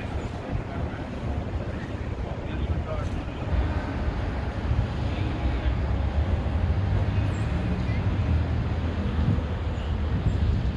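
Outdoor city ambience: a steady low rumble of wind on the microphone and distant traffic, with faint voices of people nearby. The rumble grows a little louder after a few seconds.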